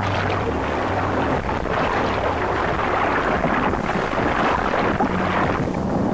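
Sea water sloshing and splashing at the surface, a steady rushing wash with a low hum underneath.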